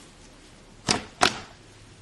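Fingers squeezing and pressing into a mound of soft pink slime, with two short, sharp pops of trapped air close together about a second in.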